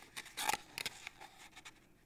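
Cardstock rustling and scraping as fingers push a folded paper box wall into place: a few short scrapes, the loudest about half a second in.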